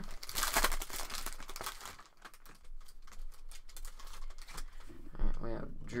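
Foil trading-card pack wrapper being torn open and crinkled, dense for about two seconds. Then softer rustling and scattered clicks as the stack of cards is handled.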